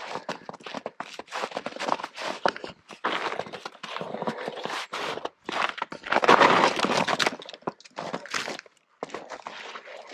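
Footsteps crunching through fresh snow, an uneven run of crunches and scuffs that grows loudest about six to seven seconds in.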